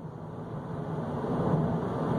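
Low background noise, a hum with a hiss over it, swelling gradually louder.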